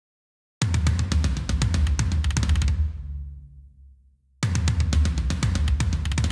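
A sampled metal drum kit (Unwavering Studios' Saudade Kit) played back from MIDI: a fast tom fill over kick drum and cymbals, its tom velocities hand-varied to sound like a human drummer. It starts suddenly about half a second in and rings out, then plays again from the top near the end.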